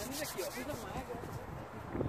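Distant voices of people talking and calling out across an open football pitch, faint and overlapping, with no one close to the microphone.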